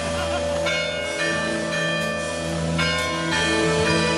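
Bells ringing: several struck notes with long ringing tails, a new stroke every half second to a second and a half, over a steady low drone.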